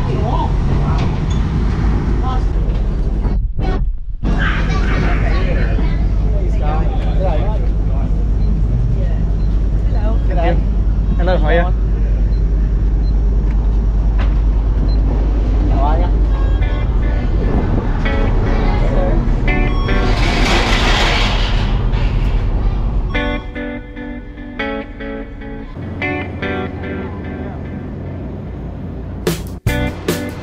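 Steady low rumble of a water taxi's engine as it comes alongside and idles for boarding, with indistinct voices over it. About three-quarters of the way through, the rumble gives way to background music with a plucked-guitar beat.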